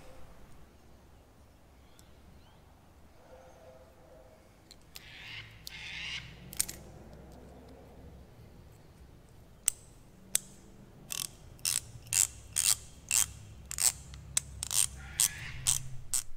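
A Sidchrome socket ratchet, freshly degreased and re-lubed after running gritty, being reassembled and then worked back and forth. Parts scrape briefly about five seconds in, then sharp pawl clicks start near ten seconds and come about two a second.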